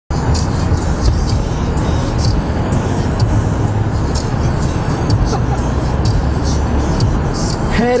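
Road and engine noise inside a moving car's cabin, a steady low rumble, with music with a light beat playing over it. A man starts speaking near the end.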